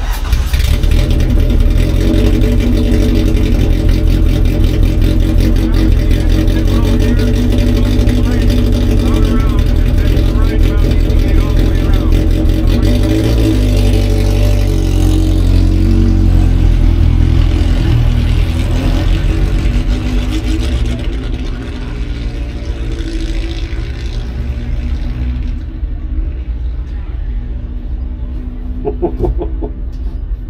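Vintage race car engine starting, then running loud and steady, quieter and duller from about twenty seconds in.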